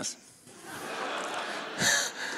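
Audience laughing, swelling up about half a second in and holding steady.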